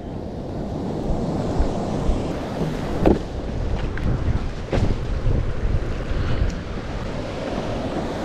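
Breaking surf and foaming whitewater rushing around a longboard as it is pushed out through the shallows, with wind rumbling on the microphone. Two short, sharp splashes stand out, about three seconds in and again just before the five-second mark.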